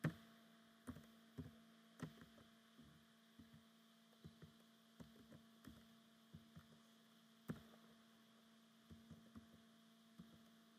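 Faint computer keyboard keystrokes, a dozen or so irregular clicks while text is typed, over a steady electrical hum.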